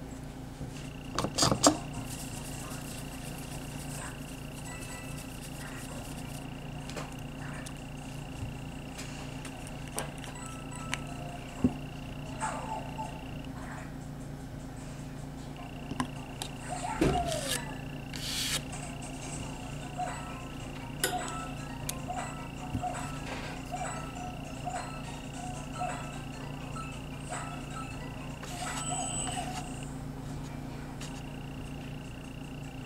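Small clicks and taps from handling nail-stamping tools: a polish bottle, a scraper and a clear stamper on a metal stamping plate. Underneath, a steady electrical hum and a high whine that drops out for a couple of seconds in the middle.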